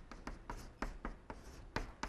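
Chalk writing on a blackboard: a run of short, irregular taps and scratches, about five a second.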